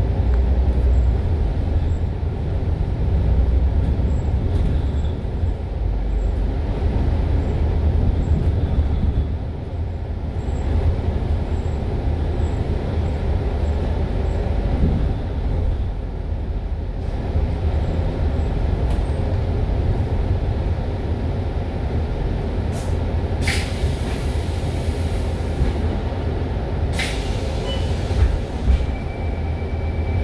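Cabin noise of a MAN A95 double-decker diesel bus under way: a steady low drone of engine and road. Near the end come two hisses of compressed air from the air brakes, a few seconds apart, followed by a short beep.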